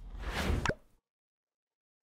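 Short whoosh-and-pop sound effect from a subscribe-button pop-up animation. It swells for about half a second and ends in a sharp pop just under a second in.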